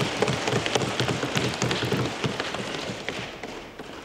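Assembly members applauding, a dense irregular patter of claps and thumps that slowly dies down.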